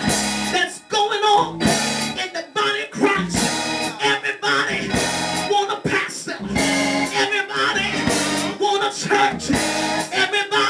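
Amplified singing through a microphone over church instrumental accompaniment, in continuous phrases.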